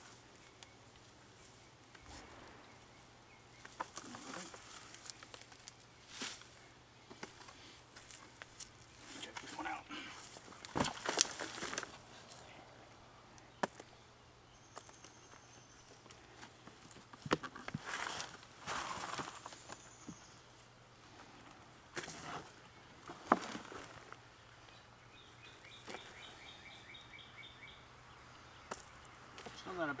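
Potting soil being tipped from a plastic nursery pot into a plastic tub and raked through by gloved hands. It comes as scattered rustles and scrapes, with a few light knocks of the plastic pot and tub.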